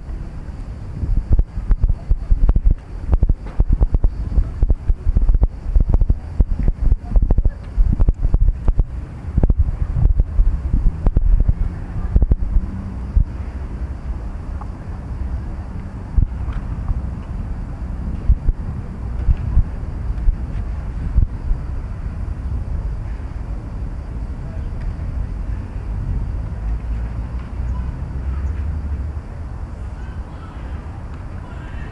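Wind buffeting the microphone in irregular gusts, heaviest in the first half, then settling into a steadier low rumble.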